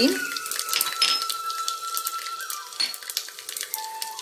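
Black mustard seeds spluttering and crackling in hot oil in an aluminium pressure cooker: quick, irregular pops over a steady sizzle as the seeds fry.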